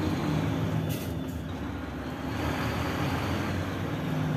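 Heavy truck's diesel engine running steadily at low speed, heard from inside the cab, with a short hiss about a second in.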